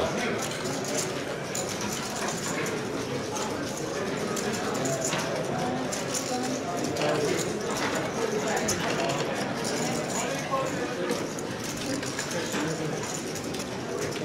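Busy poker room hubbub: many voices chattering at once, with frequent small clicks of poker chips being handled and stacked at the tables.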